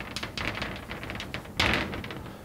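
Chalk tapping and scratching on a blackboard as an equation is written: a run of quick, irregular ticks, with a louder scrape near the end.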